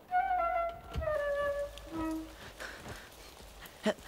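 Short flute music cue of a few held notes: the first begins at once and sinks slightly, another follows about a second in, and a short lower note sounds at about two seconds.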